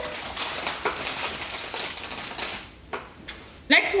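Crinkling and rustling of plastic snack wrappers being handled, a dense crackle lasting about two and a half seconds, then a quieter moment with a single click. A woman starts speaking near the end.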